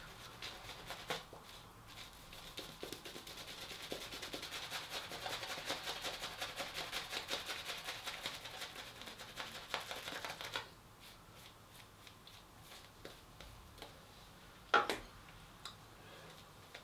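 Shaving brush lathering soap over a face, the bristles swishing in fast, even rubbing strokes. The brushing stops about ten and a half seconds in and it goes much quieter, apart from one short sharp sound near the end.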